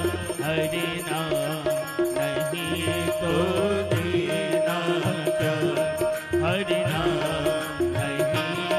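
A live Hindi devotional bhajan: a man sings over sustained keyboard notes and tabla, with a steady rhythmic beat of sharp strokes.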